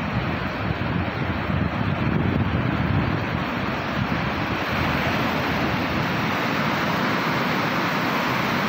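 Sea surf breaking and washing up the sand in a steady rushing wash, with wind buffeting the microphone.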